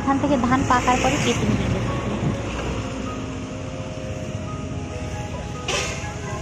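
A motor vehicle running along the road close by, a steady low rumble that carries on after a person's voice in the first second.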